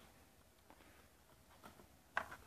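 Near silence: room tone, with a couple of faint clicks.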